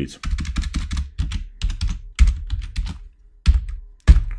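Typing on a computer keyboard: quick runs of keystrokes with short pauses between them.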